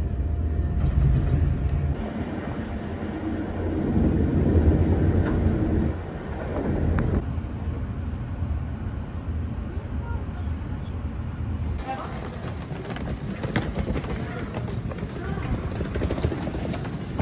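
Low rumble of a moving passenger train, heard from inside the carriage. About twelve seconds in it gives way to thinner outdoor sound with scattered sharp clicks.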